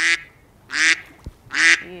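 A bird calling twice, two short harsh calls less than a second apart.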